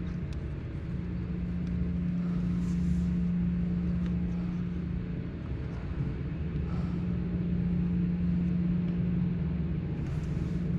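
A steady low machine hum at one constant pitch over a low rumble, dipping briefly at the start.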